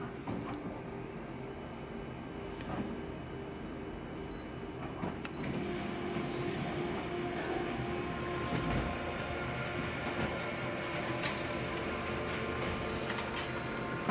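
Office colour photocopier scanning an original and then printing a full-colour copy. Its steady running noise, with a few clicks, gets louder about five and a half seconds in as printing starts.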